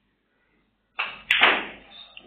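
Snooker shot: a sudden hard strike of the cue on the cue ball about a second in, then two sharp clicks a third of a second later as balls collide at the red pack, with a clatter dying away after.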